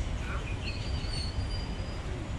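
Outdoor background noise: a steady low rumble with a thin, high-pitched squeal or whistle held for about a second in the second half.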